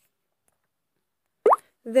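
Dead silence, then about a second and a half in a single short, loud rising blip like a plop, just before speech resumes.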